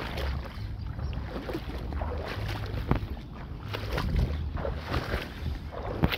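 Wading steps through shallow, weedy marsh water: irregular splashes and sloshing, over a low wind rumble on the microphone.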